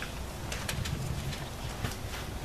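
A dove cooing faintly in the background over quiet outdoor air.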